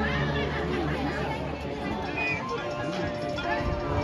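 Marching band playing a quiet passage of held notes, with people talking close by over it.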